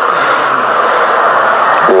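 A steady rushing noise with no pitch or rhythm, strongest in the upper middle range and unchanging throughout.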